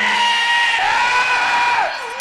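A high-pitched scream-like cry, held for nearly two seconds with a slight waver, falling away just before the end.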